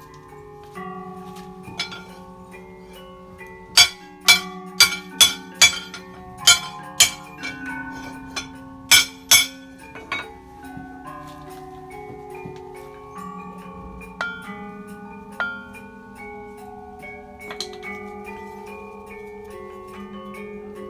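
Gamelan selonding-style metallophone music: ringing metal keys sounding a slow melody of overlapping, sustained notes. Between about four and nine and a half seconds in, a run of about ten sharp, loud metallic strikes cuts through.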